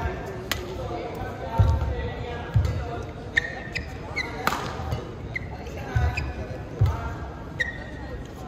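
Badminton singles rally in a large hall: sharp racket strikes on the shuttlecock, the loudest about halfway through, with heavy footfalls and short squeaks of court shoes on the mat as the players move.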